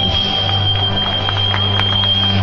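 Live folk band playing Basque dance music for muxikoak, with a held chord: a steady low note under one long high note.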